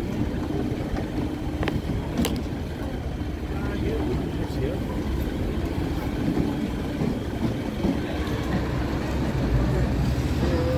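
City street ambience: a steady rumble of passing road traffic mixed with the indistinct voices of passersby, with a couple of sharp clicks about two seconds in.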